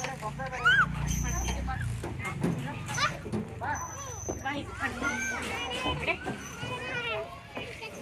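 Children playing: several children's voices calling and chattering at once, high-pitched and overlapping, without clear words.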